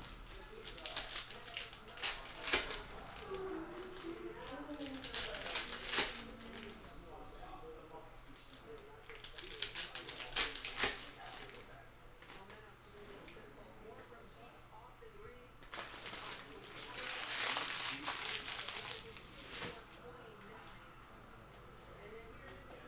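Foil trading-card pack wrappers crinkling as packs are opened and the cards handled, in several separate bursts of crinkling a few seconds apart.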